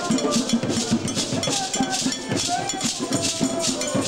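Live West African hand-drum ensemble: djembe drums played with a beaded gourd shekere rattle shaken in time, a steady dance rhythm.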